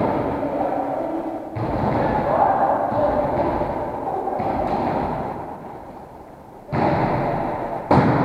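Echoing sports-hall noise of a volleyball game in progress, with sudden jumps in loudness about one and a half seconds in and again near the end. A sharp hit, the ball being played, comes just before the end.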